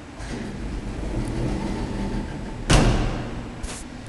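Elevator machinery or doors rumbling with a low steady hum, then one loud thump nearly three seconds in, and a short hiss near the end.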